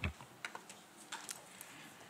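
Faint, scattered clicks and taps over quiet room noise, with a single louder knock at the very start.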